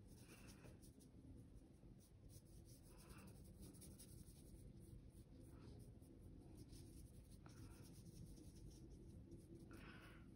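Near silence with faint strokes of a watercolour brush on textured paper: a few soft brushing sounds, a couple of seconds apart, over a low room hum.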